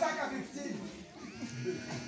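Speech only: a man's loud voice trails off right at the start, then fainter, indistinct voices.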